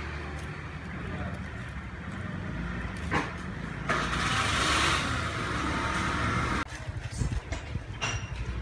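Low, steady rumble of a motor vehicle, with a louder hissing swell from about four seconds in that cuts off at about six and a half seconds.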